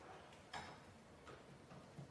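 Near silence: room tone with a few faint clicks, the clearest about half a second in.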